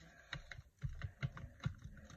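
A quick, irregular run of light clicks and taps from a hand handling things on a craft desk.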